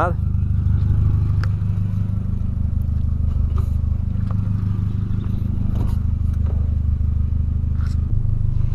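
A 2008 Volkswagen Polo sedan's engine idling steadily through its aftermarket stainless sport exhaust. A few light clicks and knocks come over it as the driver gets into the seat.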